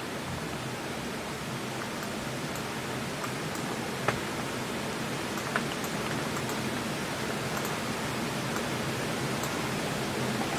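Steady hiss from open studio microphones, with a few light ticks, the sharpest about four seconds in.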